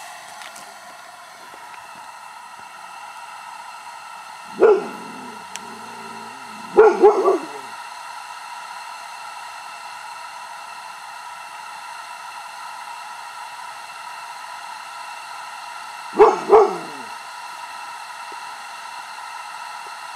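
A dog barking, five short barks in all: one about a quarter of the way in, two a couple of seconds later, and two more near the end, over a steady hiss.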